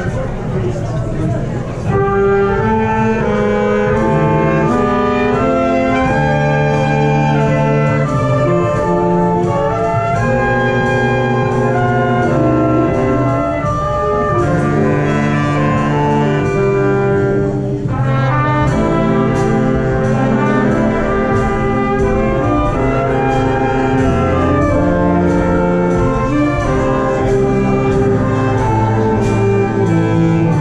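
Live big band playing: trumpets, trombones and saxophones in section chords over bass, keyboard and drums, with cymbal strokes keeping a steady beat. The full band comes in louder about two seconds in.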